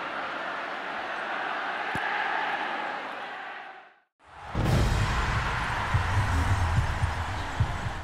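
Audio of a TV channel ident: a stadium crowd roar that fades out about four seconds in, a brief silence, then a music sting with a deep pulsing bass.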